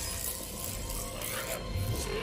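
Faint TV-show soundtrack: low background music with some scuffling and clattering.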